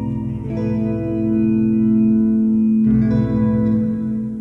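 Electric guitar and Chapman Stick playing layered, sustained chords through heavy reverb and echo effects. The chord changes about half a second in and again near three seconds, with a low pulsing bass line under the opening and closing parts.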